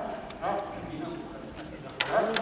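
Light footfalls and knocks on the stage floor as a kagura dancer walks across the stage, with a short burst of voice about half a second in.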